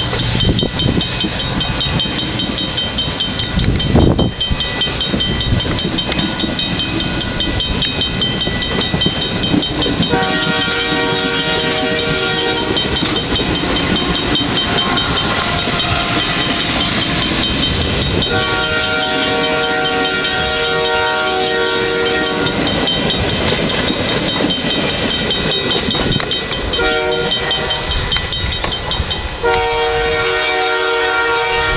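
VIA Rail Ocean passenger cars rolling past close by, their wheels rumbling and clacking over the rails, with a loud knock about four seconds in. The train's horn, from the locomotive well ahead, sounds the grade-crossing pattern: a long blast, a longer one, a short one, and a long one starting near the end.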